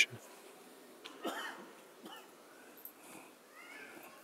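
A faint single cough about a second in, with a few small clicks and faint sounds of the hall around it.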